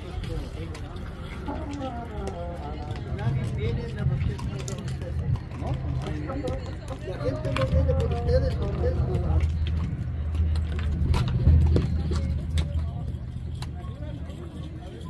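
People's voices talking, over a low, steady drone that grows louder partway through.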